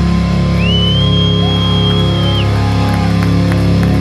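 Electric guitars and bass of a heavy metal band holding a steady, sustained low drone through amplifiers, with no drumbeat. A high whistle-like tone rises in, holds for about two seconds in the middle and falls away.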